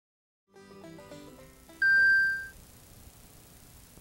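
Short intro music sting: a quick run of soft notes about half a second in, then one loud, high, held tone that fades out after about two-thirds of a second.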